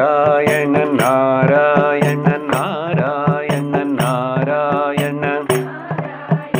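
A man singing a devotional chant in a long, wavering melody, keeping time with sharp strikes of a brass hand cymbal about every half second.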